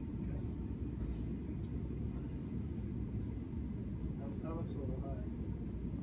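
Steady low rumble of room noise, with faint distant voices about four and a half seconds in.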